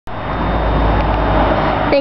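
Steady outdoor background noise, a low rumble with a hiss over it, beginning with a click as the recording starts.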